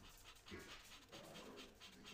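Faint, rhythmic scratching of a black Posca paint-marker tip stroking back and forth on paper as a dark background is filled in, about four strokes a second.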